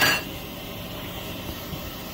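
Flufftastic cotton candy machine running, its spinner head turning steadily with a light metallic clinking, a sharp clink right at the start. The machine is faulty: it flings the sugar straight out against the stainless bowl instead of spinning it into floss.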